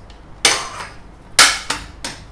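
Guru 360 camera gimbal stabilizer being pulled apart, head from handle, with sharp clacks of its parts knocking: one about half a second in, then two more close together a second later.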